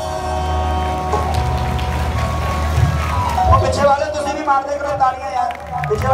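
Live devotional band music through a sound system: held keyboard chords over a low bass drone, joined about halfway through by a man's amplified voice singing or calling over the music.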